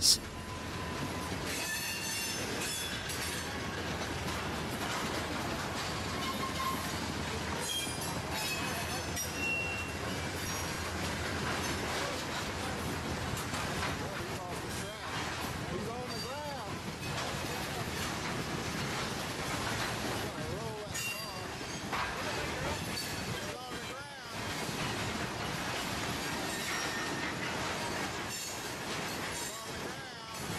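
Freight train covered hopper cars rolling past on derailed wheels at a track frog, with steady rolling noise, scattered high-pitched wheel squeals and clanks throughout.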